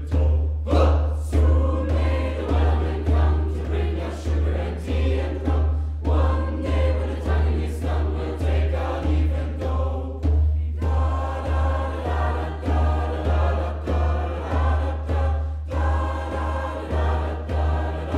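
Mixed school choir of teenage voices singing in several parts, over a steady low beat pulsing about twice a second.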